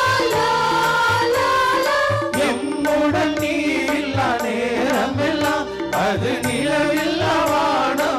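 Devotional church hymn during Mass: held instrumental notes open it, and a singing voice comes in about two seconds in over the continuing accompaniment.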